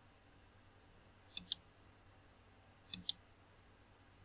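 Computer mouse button clicked twice, about a second and a half apart. Each click is a quick press-and-release pair.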